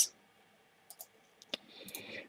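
About four short, faint clicks from a computer keyboard and mouse, in two quick pairs about a second in and a second and a half in, with near silence between them.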